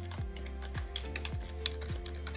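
Computer keyboard keys being typed in a quick, irregular run of clicks as a password is entered, over quiet background music with a steady beat.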